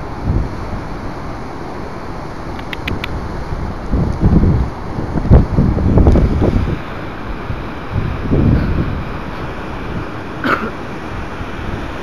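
Wind buffeting the phone's microphone: a low rumbling noise that swells in gusts several times.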